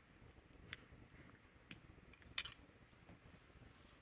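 Near silence broken by a few light clicks as a clear demonstrator fountain pen is handled, the sharpest a quick double click about two and a half seconds in.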